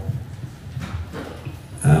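A man's voice in a reverberant hall: low, faint hesitant voice sounds, then a clear 'uh' near the end as he starts to answer.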